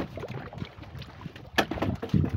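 Knocks on a wooden canoe as a long pipe fish trap is handled against its side: one sharp knock at the start and another about one and a half seconds in, over water lapping at the hull and light wind on the microphone.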